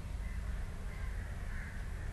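Steady low hum of an open call microphone, with faint bird calls in the background in the second half.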